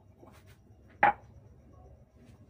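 A metal spoon clinking once, sharply, against a metal cooking pot about a second in, after a fainter tap.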